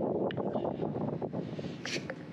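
Wind buffeting the microphone, an uneven rumble, with a brief knock near the end.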